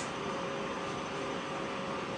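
Steady hiss with a faint even hum: the background room tone of a recorded indoor talk, with no distinct event.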